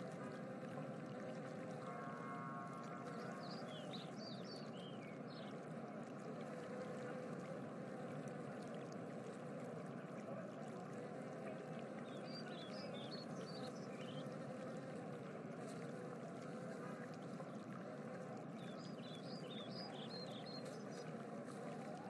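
A steady, faint rushing noise like running water, with short runs of high chirps about four seconds in, about twelve seconds in and near the end.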